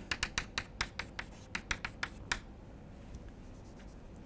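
Chalk tapping and scratching on a blackboard as an equation is written: a quick run of short strokes for the first two and a half seconds, then it stops.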